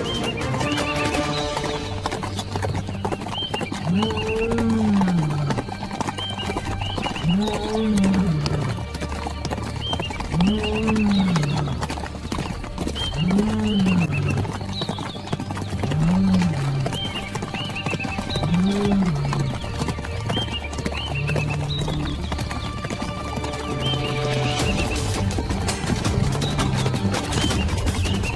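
Background music: steady low notes under a swooping low tone that rises and falls about every three seconds, with a faint chirp on each swoop.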